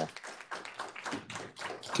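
A few people clapping lightly, scattered claps close together.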